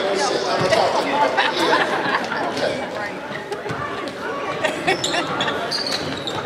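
Overlapping chatter of voices from spectators and players in a gymnasium, with a few scattered sharp knocks.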